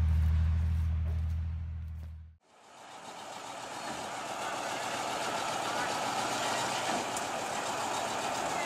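A Ural truck's diesel engine running with a deep, steady hum, fading out about two seconds in. After a brief gap, a steady, noisy rumble of a tracked bulldozer's machinery builds slowly.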